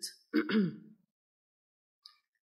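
A woman briefly clearing her throat once, the sound falling in pitch.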